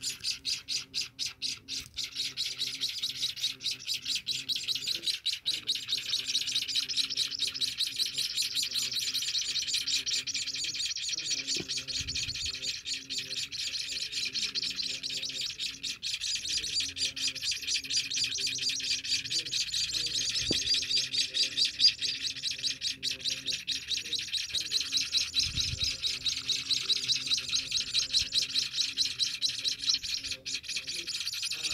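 Ten-day-old emprit kaji (white-headed munia) nestlings begging while being hand-fed: a continuous chorus of rapid, high-pitched chirps that pulses a few times a second.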